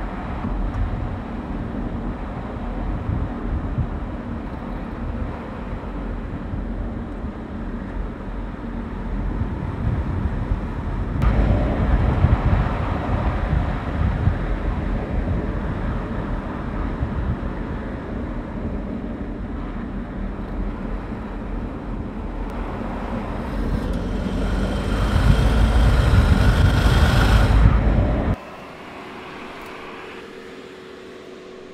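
Audi A8 saloon driving past on a road: engine and tyre noise. It grows louder about a third of the way in and louder again near the end, where an engine note shows through, then cuts off suddenly.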